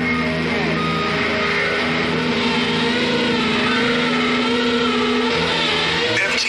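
Electric guitar played loud through an amplifier, with sustained, distorted notes held steady and a dense wash of sound above them.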